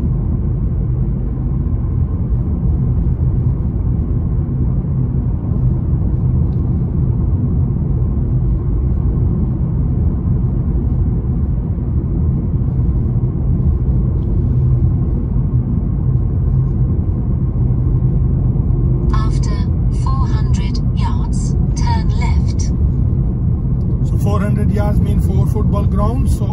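Steady low rumble of a car's engine and tyres heard from inside the cabin while cruising at around 40 mph.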